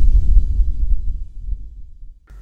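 Deep low rumble of a logo-intro sound effect dying away after its opening hit, fading out by the end.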